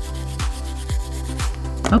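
Hand nail file rubbing back and forth over a cured gel-polished nail, filing through the top layers of cat-eye gel to expose the colours beneath. Background music with a steady beat about twice a second plays under it.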